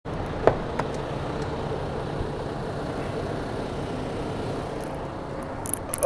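Steady low hum and noise of a parked truck, heard from inside the cab with the door open, with a sharp knock about half a second in and a few light clicks near the end.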